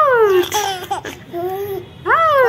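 Baby laughing with high-pitched sounds that fall in pitch: a long one at the start and a shorter one past the middle.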